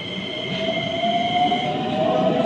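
Keikyu New 1000 series electric train pulling away from a station: a steady whine from its traction motors rises slowly in pitch as it gathers speed, over the rumble of wheels on rail.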